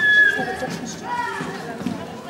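Background voices of people talking, with a high-pitched voice sliding down in pitch right at the start.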